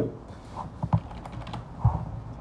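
A few scattered clicks and taps of computer input, from the keyboard and mouse of a desktop, while Photoshop edits are made.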